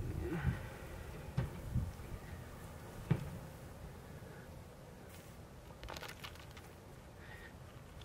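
Hands pushing and patting soft loose soil back around a young tree's roots: faint scraping rustles, with a few soft knocks in the first three seconds.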